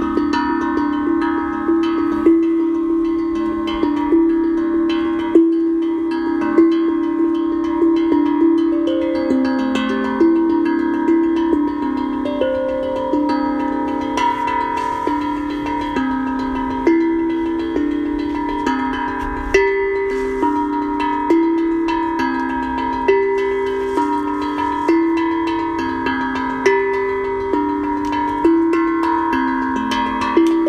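Tongue drum played in a continuous improvised run, with notes struck several times a second, each ringing on under the next. The melody moves over a few low notes, and the strokes are accented every second or two.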